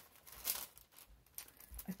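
Paper packaging crinkling as it is handled and unwrapped, in a few short, faint rustles.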